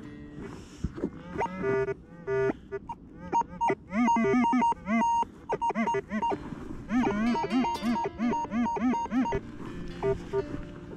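Rutus Atrex metal detector sounding off on a buried target: quick runs of electronic beeps, some steady, many rising and falling in pitch as the coil passes over it. The target gives a high ID reading, above 80.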